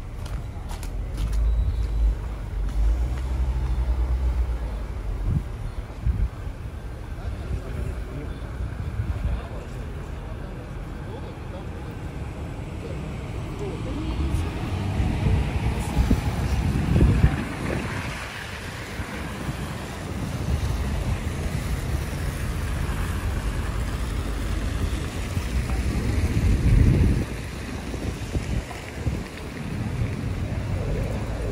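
Snowy city street ambience: traffic noise and low wind buffeting on the microphone, with a car passing close on the slushy road with a swell of tyre hiss about 17 seconds in, and passers-by talking.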